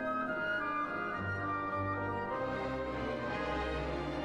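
Orchestral background music, slow and sustained, with low brass such as French horn carrying the melody and a deep bass line coming in about a second in.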